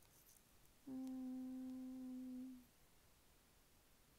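A woman humming a single steady note with closed lips for about a second and a half, starting about a second in.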